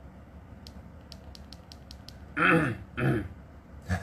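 A man laughing briefly: two short voiced bursts with falling pitch about two and a half and three seconds in, and another right at the end.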